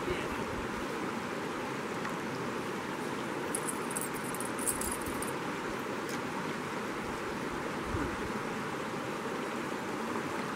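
Shallow creek water running over rocks, a steady rushing.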